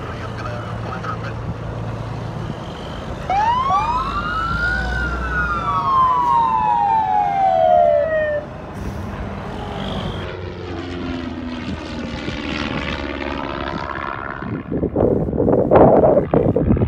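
An airport fire-rescue truck's siren gives one wail about three seconds in, rising and then falling over about five seconds. Then an airplane passes, its engine sound sweeping down and back up in pitch. Gusts of wind hit the microphone near the end.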